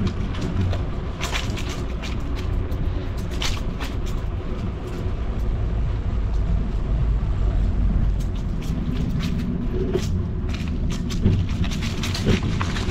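Outdoor street ambience: a steady low rumble with scattered short crackles, denser near the start and near the end.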